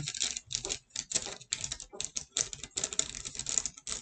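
Paper crackling and rustling in the hands as a receipt is unfolded and handled, in quick irregular crackles.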